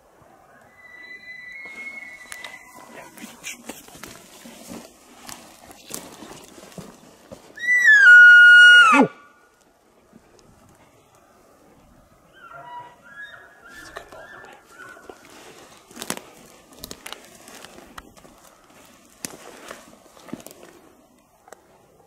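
A loud, high mewing call, about a second and a half long, that rises, holds, then slides steeply down in pitch at the end. A fainter high call comes about a second in and another about thirteen seconds in, with rustling and light knocks between.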